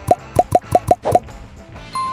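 Six quick cartoon 'plop' sound effects in about a second, each a short bloop sliding upward in pitch, over background music.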